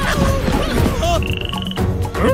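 Cartoon frog croaking in short curving calls over background music, with a brief high steady whistle-like tone just past the middle.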